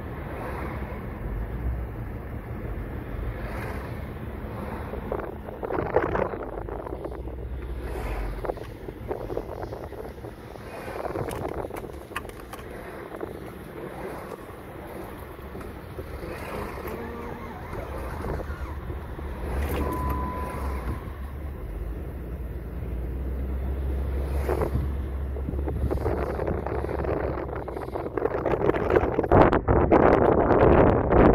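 Car cabin road noise while driving: a steady low engine and tyre rumble with wind noise, a few brief knocks, and a short beep about two-thirds of the way through. The noise grows louder over the last few seconds.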